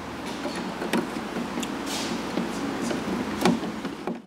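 Steady background noise with a few sharp knocks and clicks, one about a second in and a louder one near the end.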